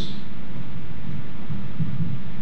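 Steady low rumbling background noise with no distinct event, heard in a pause between spoken phrases.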